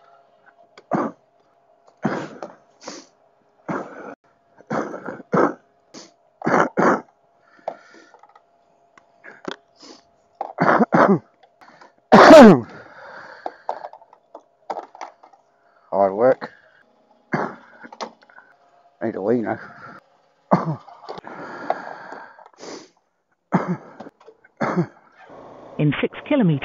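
A man's voice in short mutters and hums to himself, with a loud cough about twelve seconds in.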